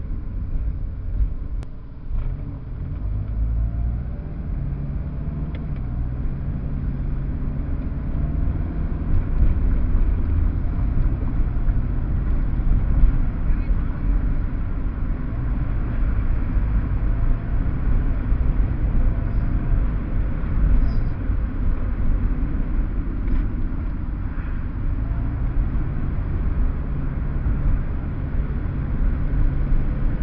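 Steady low rumble of a car's engine and tyres on the road, heard from inside the car's cabin while driving in city traffic.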